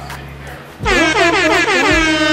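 Intro music with a low, steady beat. About 0.8 s in, a loud air-horn sound effect blares in; its pitch wavers up and down before it settles onto one held tone.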